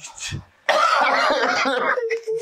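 A man's loud, hoarse cry, held for over a second, as he reacts to a painful chiropractic neck adjustment.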